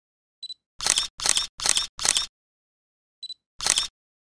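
Camera focus-confirm beep followed by four shutter releases in quick succession, about two and a half a second, then another beep and a single shutter release near the end.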